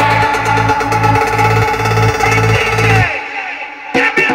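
A work-in-progress electronic dance track playing back from the production software: a pulsing bass about two and a half beats a second under sustained synth lines. About three seconds in the bass and top drop away into a short quieter break, and a sharp hit near the end brings the track back in.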